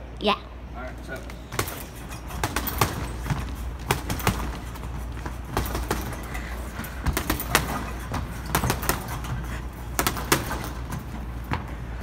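Boxing-gloved punches landing on a hanging heavy bag: a run of sharp, irregular thuds, about two or three a second, starting a second and a half in.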